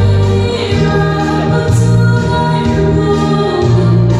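A woman singing a gospel song into a microphone over an accompaniment with sustained bass notes that change about once a second, heard through a PA system.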